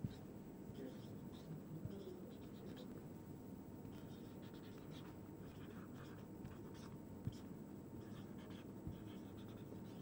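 Marker pen writing on a whiteboard: faint, irregular squeaks and scratches of the pen strokes.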